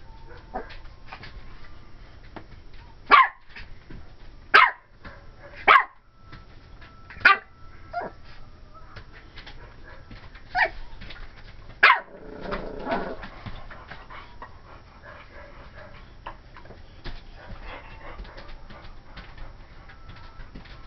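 Pomeranian puppy barking: six sharp, high yappy barks, the first four about a second and a half apart, then two more after a short pause, followed by a softer, lower sound. It is wary alarm barking at a doll the puppy has just noticed.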